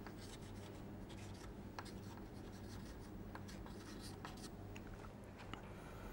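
Chalk writing on a chalkboard, faint scratches and small taps, over a steady low hum.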